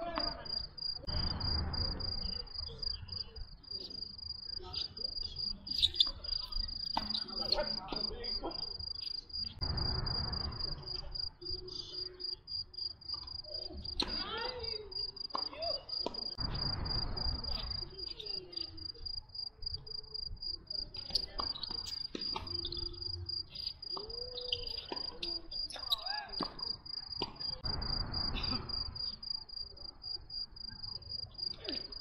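Crickets chirping in a continuous high, fast-pulsing trill. Sharp knocks of tennis balls struck by rackets come at intervals, and a low rushing noise swells and fades four times.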